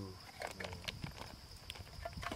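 A voice counting aloud in Malay, saying 'dua', with a few sharp clicks and a steady high-pitched insect drone in the background.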